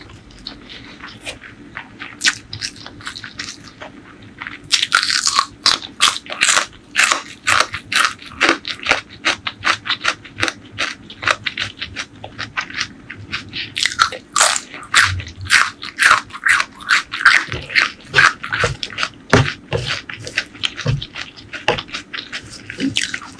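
Close-miked chewing of crunchy food: soft, sparse chewing at first, then rapid, crisp crunching from about five seconds in.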